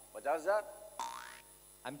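A man's voice with a strongly wobbling, warbling pitch. About a second in comes a brief hissing sound effect with a sweeping tone, lasting under half a second.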